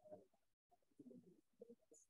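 Near silence with faint, indistinct murmuring voices, dropping briefly to dead silence once.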